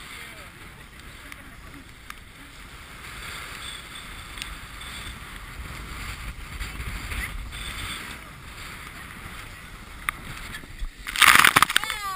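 Wind buffeting the microphone and water rushing along the hull of a heeled sailboat in rough water. About eleven seconds in, a loud burst of splashing as a wave breaks against the boat and throws spray.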